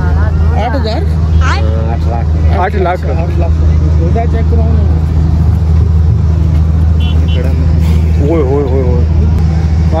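A steady low engine drone runs without a break, with people talking over it during roughly the first three seconds and again near the end.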